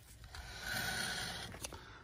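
2003 Hyundai Sonata's front hub and brake rotor spun by hand on a freshly fitted CV axle, giving a light rubbing whir that swells about half a second in and fades as it slows, with a click near the end. The little rubbing is just the brakes touching the rotor, a harmless sign.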